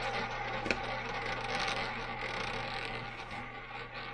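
Ball rolling and rattling in a spinning double-zero roulette wheel, with one sharp click a little under a second in.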